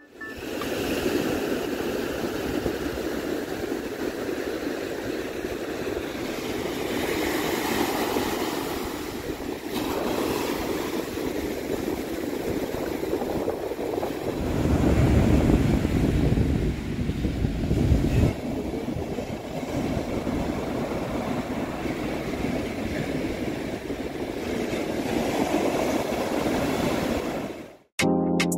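Ocean surf washing in and breaking, a steady rushing noise, growing louder and deeper for a few seconds about halfway through.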